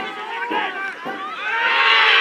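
Short shouts from players and spectators at a football match, then a crowd cheer rising about one and a half seconds in.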